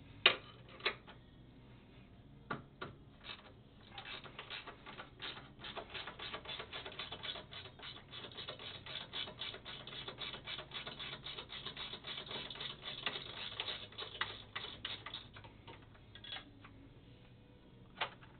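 A 13 mm wrench backing out a hex head bolt on a GS-X pinsetter elevator's pin deflector. There are a few separate metal clicks, then a long run of rapid, even clicking at several clicks a second, which thins out to a last couple of clicks near the end.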